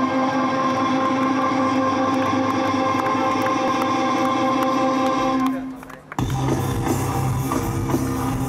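Rock band playing live through a festival PA, heard from the crowd. A single steady held note with overtones rings and fades out about five and a half seconds in. Just after six seconds the full band comes in together, with distorted guitar, bass and drums.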